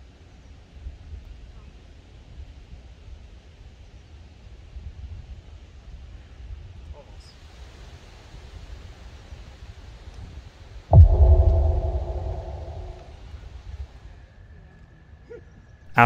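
Low wind rumble on the microphone, broken about eleven seconds in by a sudden loud knock that rings on for about two seconds.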